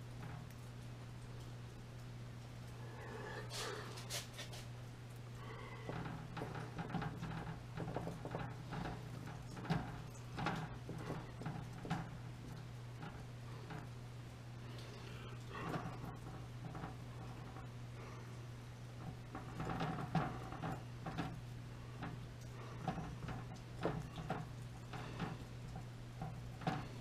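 Faint small taps and clicks of hands working a super glue bottle against the patched aluminum pot, scattered irregularly over a steady low hum.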